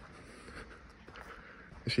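Faint, steady outdoor background noise with a few light clicks. A man's voice begins right at the end.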